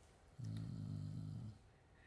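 A man humming a low, steady closed-mouth 'mmm' for about a second, starting about half a second in.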